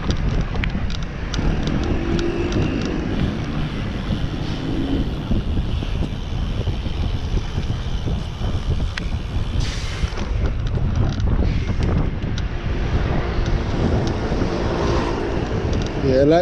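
Wind buffeting the microphone of a camera on a moving bicycle, over a steady rumble of road and traffic noise, with scattered small clicks.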